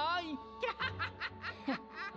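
A man snickering, a quick run of short breathy laughs, over quiet background music, after a brief spoken line at the start.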